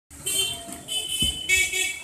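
Vehicle horn sounding three short, high-pitched honks in quick succession, with a brief low thump about a second in.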